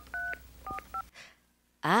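Telephone keypad touch tones: three or four quick dialed digits in the first second, each a short two-note beep. A man's breathy "ah" follows near the end.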